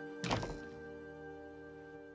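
A wooden bedroom door shutting with a single thunk about a quarter second in, over soft, sustained background music.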